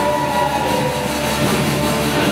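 A live rock band playing loud, steady music on electric guitars, electric bass and double bass through amplifiers.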